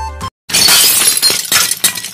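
Glass-shattering sound effect. A sudden loud crash of breaking glass comes about half a second in, followed by scattered tinkling shards that die away after about two seconds. Just before it, a bright music track cuts off abruptly.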